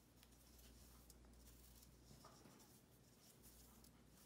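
Near silence, with faint rustling and soft ticks of macramé cord being handled and pulled into a knot.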